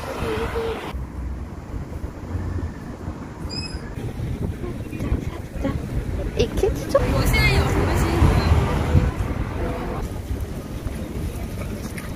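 Street ambience with wind buffeting the microphone, a low rumble of traffic, and brief snatches of people's voices, loudest between about 7 and 9 seconds in. The sound changes abruptly a few times as the shots cut.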